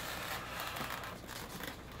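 Soft rustling and scraping of cardboard and foam packing as parts are pulled out of a shipping box.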